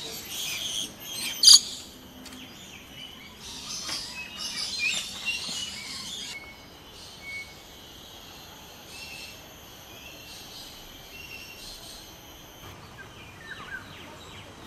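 Birds chirping and calling, busiest in the first six seconds, with one loud sharp sound about a second and a half in. After that the chirps are fainter and sparser, over a steady outdoor background with a thin high steady tone.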